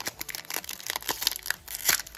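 Foil booster-pack wrapper crinkling and crackling in the hands as it is torn open, in irregular clicks with a sharper snap near the end.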